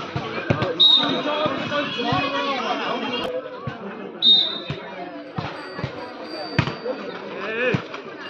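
A volleyball being struck during a rally: several sharp slaps of hands on the ball a second or so apart, over players and spectators shouting.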